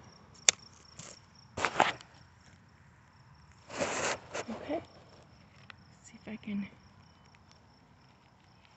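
A hand cutter snaps through drip irrigation tubing with one sharp click about half a second in, followed by rustling as the tubing is handled against landscape fabric. A steady high insect trill runs underneath.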